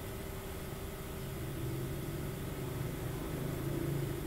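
A steady low mechanical drone from a running motor, growing a little louder about a second and a half in.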